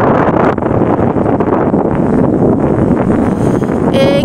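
Wind buffeting the microphone: a loud, unsteady low noise that covers the street sounds.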